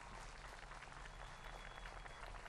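Faint applause from a seated crowd, an even patter of many hands clapping.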